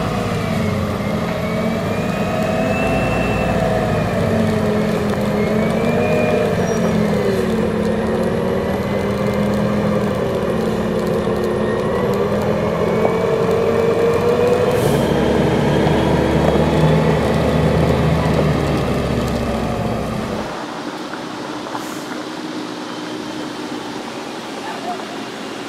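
Volvo FH16 500 log truck's 16-litre straight-six diesel running under load as the loaded truck comes down a mountain forest track, its engine note wavering up and down. About twenty seconds in the deep rumble drops away and the truck is heard more faintly.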